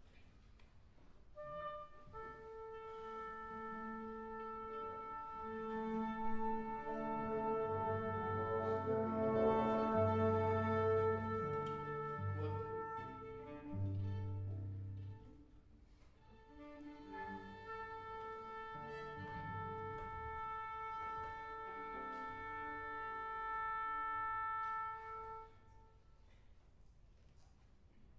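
Orchestra of strings and brass playing held chords over low bass notes, swelling to a peak and breaking off about halfway, then starting again a moment later and cutting off sharply near the end.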